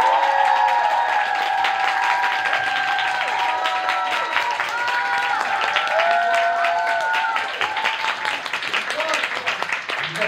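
Audience applauding after an acoustic guitar song ends, with long high voices calling out over the clapping. The applause thins out near the end.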